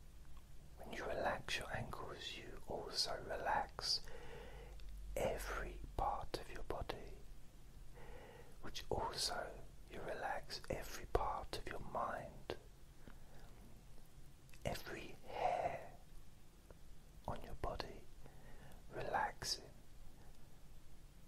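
A man whispering close to the microphone, in short phrases with pauses between them.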